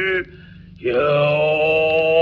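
Solo male Noh chanting (utai) in the Hōshō style: a long held note breaks off, a brief pause for breath, then a new note rises in and is held with a slight waver. Steady low surface noise from the old 78 rpm record runs underneath.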